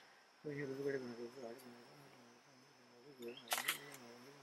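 A man's low voice intoning magic words in a wavering chant, in two stretches, over a steady high insect drone. Near the end comes a quick cluster of sharp clicks.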